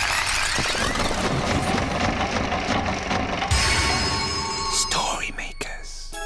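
Children's TV soundtrack: music overlaid with sweeping, swirling magical sound effects that glide up and down, with a few sharp clicks about five seconds in.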